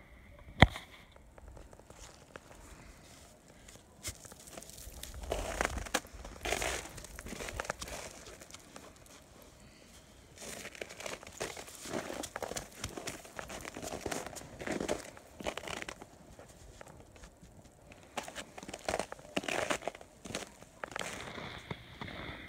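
Gloved hands packing wet slush mortar into the joints between ice bricks: irregular crunching and crackling, with one sharp knock about half a second in.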